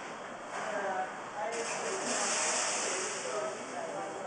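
Indistinct conversation of people in the room. A steady high hiss joins it from about a second and a half in and lasts nearly two seconds.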